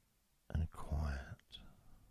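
A man's voice speaking softly for about a second, starting about half a second in, with a short tick near its end.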